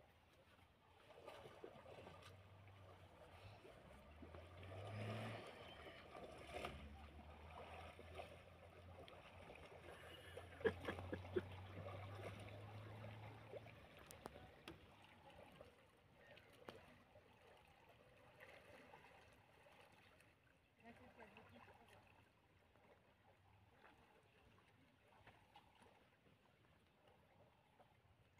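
Near silence, with a faint low hum through the first half and a few faint clicks about ten seconds in.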